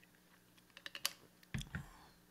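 Computer keyboard typing: a quick run of faint key clicks about a second in, then a couple of soft, low thumps near the end.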